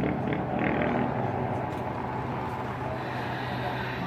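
Steady low engine drone of distant motor noise, with no clear rises or breaks.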